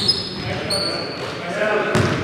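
Basketball game on a hardwood gym court: sneakers squealing on the floor near the start and again about a second in, with a ball bouncing. Players' voices rise near the end.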